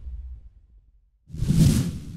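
A whoosh transition sound effect that swells up out of silence about a second and a half in, then fades away within about a second.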